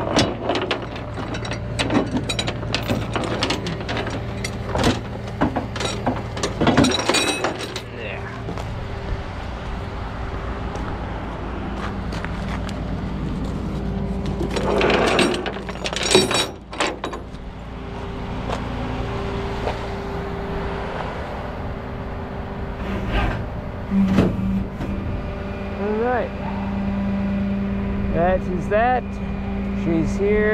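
A rollback tow truck's engine runs steadily while chains and tie-down hooks clank and rattle against its steel deck, in bunches over the first several seconds and again around the middle. Near the end the hum gets louder and a few short rising squeaks sound over it.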